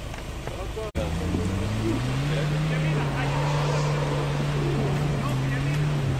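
Off-road 4x4's engine revving up and then held at high revs, with a noisy rush under it, as the vehicle claws up a rock step with its wheels throwing up dust. The revs climb for about a second and a half after a sudden cut about a second in, then stay steady.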